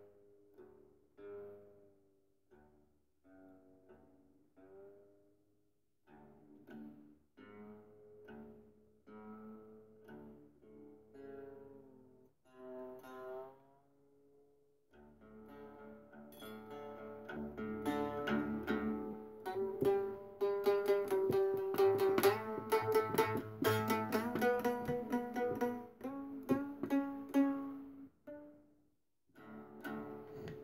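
Homemade three-string fretless lute, modelled on a Japanese shamisen and strung with guitar strings, being plucked. Soft single notes with short pauses for the first half, then from about fifteen seconds in louder, faster playing with several strings ringing together, stopping shortly before the end.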